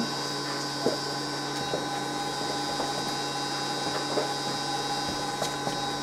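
Steady hum of running electronic equipment, several fixed tones at once over a noise bed, with a few faint clicks.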